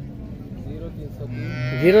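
A cow mooing: a low call begins about a second and a half in and rises into a loud, long moo that is still going at the end.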